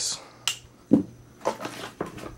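Handling noises as a stick battery pack is set down and another is picked up from a foam-lined hard plastic case: a sharp click about half a second in, a knock near one second, then rustling.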